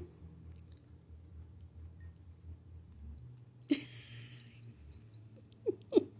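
Quiet room with a low steady hum, broken by one short breathy laugh a little past halfway and a brief chuckle near the end.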